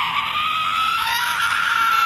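A young man's shrill scream held as one long, high note at full voice, its pitch creeping slightly upward.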